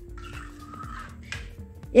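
Soft background music with a few held notes, and one light clink of a metal spoon against a glass mixing bowl about a second and a half in.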